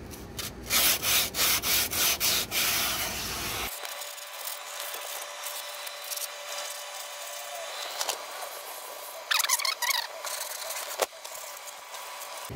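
Sandpaper rubbed by hand back and forth over rusty steel undercarriage pipes, scraping loose rust off in quick, rapid strokes. The strokes are loudest for the first few seconds, then fainter, with another short run of scrapes near the end.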